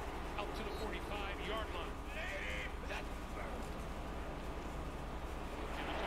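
Faint speech from the football broadcast playing quietly in the background, over a steady low hum.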